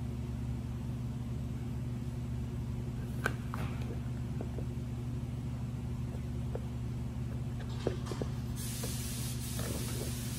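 A few faint snips of scissors cutting the corners off a clear plastic sheet, over a steady low hum. Near the end there is a soft hiss as the plastic sheet is handled.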